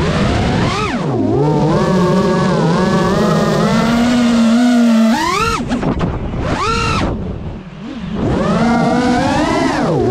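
FPV racing drone's brushless motors whining, the pitch rising and falling with the throttle and sweeping sharply upward in quick punches several times, with a short drop in level near the end.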